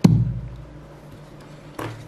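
A click from the on-off switch on the Logitech Z213's wired control pod, followed by a short low thump from the speakers that dies away within about half a second as the system switches off. A second short knock comes near the end.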